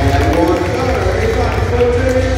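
A drawn-out voice echoing through a gymnasium over crowd noise, with a steady low hum beneath.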